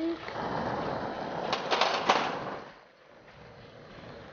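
Lampworking torch flame hissing steadily, with a few sharp clicks about a second and a half to two seconds in; the hiss drops much quieter near three seconds in.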